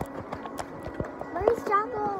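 Irregular clicks and knocks from a phone being handled, and about halfway through a person's voice that slides up and down in pitch for under a second.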